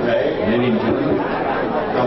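Speech only: several people's voices chattering at once in a large room.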